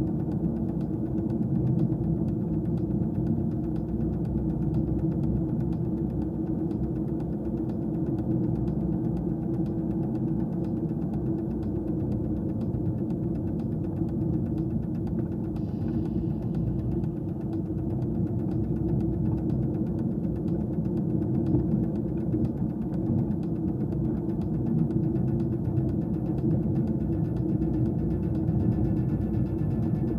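A car driving on a rough gravel road, heard from inside the cabin: a steady low drone of engine and road rumble.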